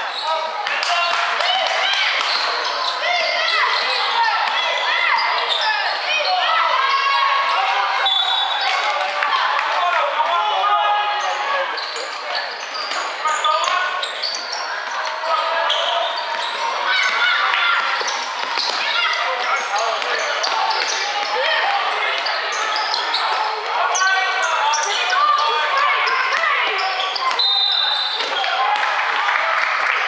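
Basketball being dribbled and bounced on a hardwood sports-hall court, with many voices talking and calling in the background, echoing in the large hall.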